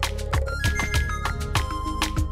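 Background film-score music with a steady drum beat. About halfway through, a synth melody steps down in pitch.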